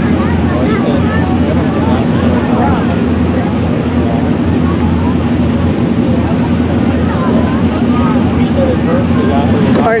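Dirt-track hobby stock race car engines running at low speed, a steady low drone with no revving, with faint voices of nearby spectators over it.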